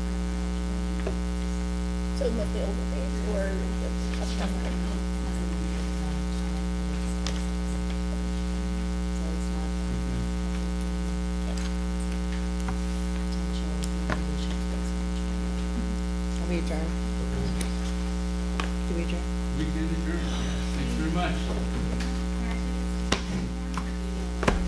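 Steady electrical mains hum with a stack of overtones, under faint rustling of papers and small ticks and clicks, a couple of them sharper near the end.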